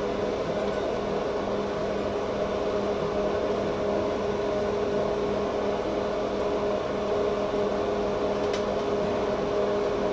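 Steady electric hum of a kitchen fan motor, with even-pitched tones over a soft rushing noise. There is one light click near the end.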